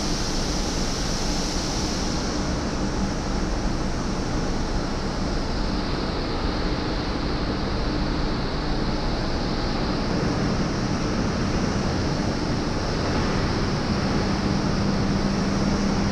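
Steady industrial machinery noise of a factory floor: an even rushing hiss with a low hum under it, the hum growing stronger about two seconds before the end.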